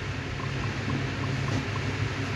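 Steady low hum and hiss in the background, with a row of faint, short ticks about every quarter second: smartphone on-screen keyboard tap sounds as a word is typed letter by letter.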